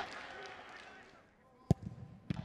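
Faint background sound dying away to near silence, then one sharp knock near the end.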